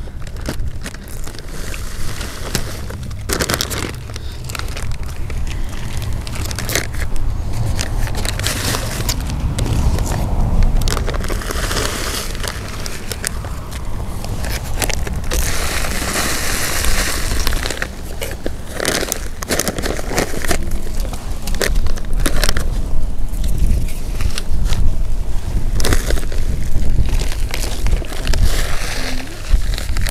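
Soil scooped with a plastic hand scoop and poured into a black plastic nursery bag, with gritty scraping and the bag's plastic crinkling, in irregular bursts over a steady low rumble.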